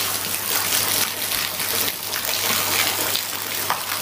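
Steady rush of running water at a catfish pond, with a low steady hum underneath.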